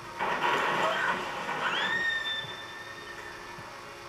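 Film soundtrack heard through a television speaker: a loud, rough vocal outburst, then a high-pitched squeal that rises sharply and holds for about a second and a half before fading.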